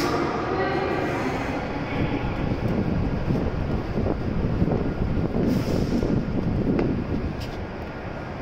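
Hokuriku Shinkansen E7/W7-series train departing the platform: a low rumble of the train on the move swells over several seconds, then drops off near the end, with a few sharp clicks late on.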